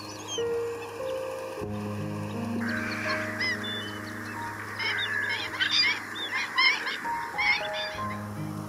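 A flock of wetland birds calling, many short overlapping calls starting about two and a half seconds in, growing denser in the second half and stopping just before the end, over soft background music.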